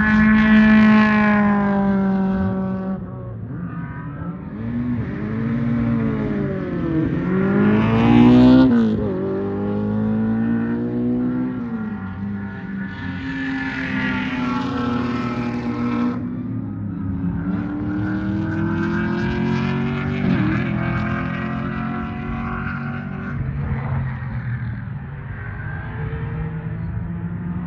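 Several race car engines running hard on the circuit, heard together, their pitch climbing through the gears and dropping when they lift off and brake. The loudest moment is a car passing close about eight seconds in.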